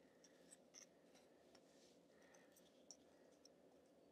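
Near silence, with a few faint, light taps as the paint-dipped end of a daffodil stem is pressed onto paper to stamp small dots.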